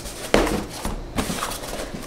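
Small corrugated cardboard shipping box being unfolded and set into shape: a sharp knock about a third of a second in, then the cardboard flaps creasing and scraping, with another knock a little after a second.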